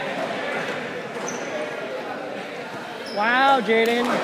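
Murmur of voices in a gym, then about three seconds in a loud shout from one person in two parts, the first rising and falling in pitch, the second held level.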